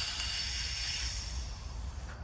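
Momum Quick CO2 inflator hissing as gas from the cartridge flows into a bicycle tyre; the hiss fades away about a second and a half in.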